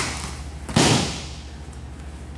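Wrestlers' bodies landing on a foam wrestling mat in a takedown: one heavy thud a little under a second in.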